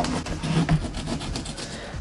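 Kitchen knives cutting vegetables, a red bell pepper on a plate and a red onion on a plastic cutting board: a run of quick, irregular tapping and scraping strokes.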